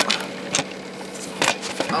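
Handling noise from a camera being gripped and repositioned by hand: about four sharp knocks and rubs, the loudest about one and a half seconds in.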